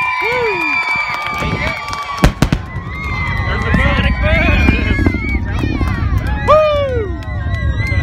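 Sonic boom from the returning SpaceX Falcon 9 first stage: three sharp bangs in quick succession about two seconds in, the loudest sound here, followed by a low rumble that builds and holds. Spectators shout and whoop over it.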